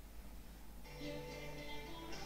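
Faint music of held, steady notes that comes in just under a second in, over a low steady hum.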